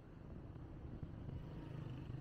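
Faint, low rumble of road traffic, a vehicle engine running, growing a little louder in the second half.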